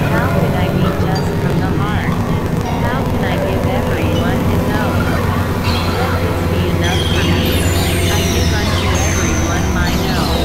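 Experimental electronic drone music from synthesizers: a steady low drone under layered warbling, voice-like tones and pitch glides over a noisy texture, with high whistling glides joining in the second half.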